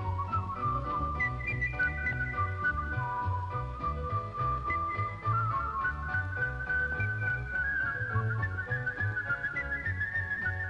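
Whistled melody of held notes with a few short slides, played over acoustic guitar accompaniment with a steady rhythmic bass.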